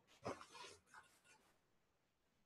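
Near silence: room tone, with a few faint, brief sounds in the first second.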